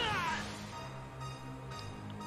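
A short, high cry that falls in pitch right at the start, from the anime episode's audio, then low, sustained background music.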